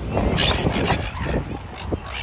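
Gulls calling in short squawks, over a steady low rush of background noise.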